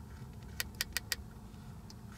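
A quick run of four sharp clicks, about half a second in, from control buttons being pressed while the Audi S3's digital instrument display scrolls between pages. Under them, a steady low hum from the stationary car.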